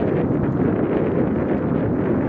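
Steady wind noise on the microphone from the bicycle's forward motion, a constant low rumbling rush.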